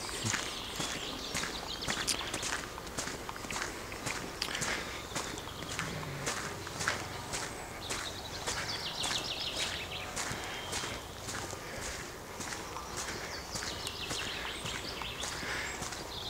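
Footsteps walking at a steady pace on an unpaved trail, about two steps a second.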